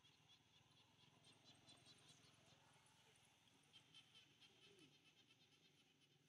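Near silence: faint outdoor ambience of insects chirping in rapid, high ticks.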